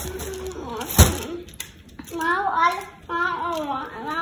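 An indistinct voice in two short stretches in the second half. A single sharp knock about a second in is the loudest sound.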